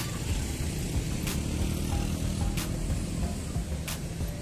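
Street traffic: a motor vehicle engine running close by over a steady low rumble, with music playing in the background.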